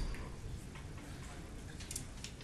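Carom billiard balls clicking against each other and the cushions as they roll during a three-cushion shot: a few scattered light clicks, the sharpest near the end.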